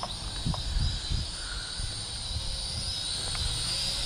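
ScharkSpark Wasp SS40 toy quadcopter's small motors and propellers humming in a steady high whine that wavers slightly in pitch, with wind gusting on the microphone underneath.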